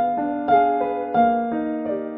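Solo piano playing a gentle, flowing broken-chord figure, a new note struck about three times a second over a held bass note.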